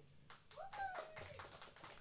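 A few scattered hand claps in a quiet room, with a faint voice calling out briefly about half a second in.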